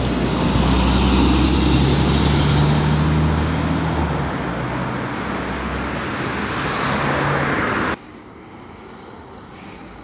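Articulated city bus pulling away from the stop: a loud, steady engine hum with road noise that fades over the first few seconds. About eight seconds in the sound cuts off suddenly to much quieter street traffic noise.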